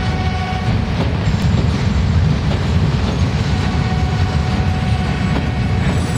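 Indian Railways passenger train with sleeper-class coaches rolling past the platform: a steady low rumble from the wheels and coaches. Faint thin squealing tones come in near the start and again from about three and a half seconds in.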